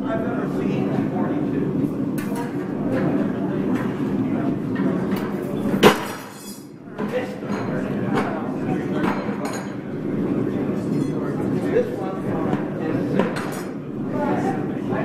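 Forged metal pieces clinking and clanking as they are picked up and handled on a table, with one sharp clank about six seconds in and a few lighter clinks after, over a group of people chatting.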